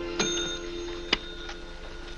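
A small bell on a homemade burglar alarm dings once just after the start, with a high ringing that dies away, and gives a sharp click about a second in. Soft orchestral music fades out underneath.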